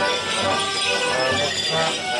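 A lively morris dance tune played on squeezeboxes, with steady held chords and a regular beat, and the dancers' leg bells jingling along.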